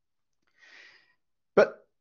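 Silence broken by a faint, short intake of breath, then a man speaks the single word "But" near the end.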